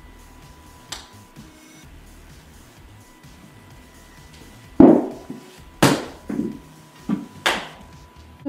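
A light click of a putter striking a golf ball on carpet about a second in, over a steady high electronic tone. From almost five seconds in come five loud sudden outbursts in under three seconds, the first the loudest.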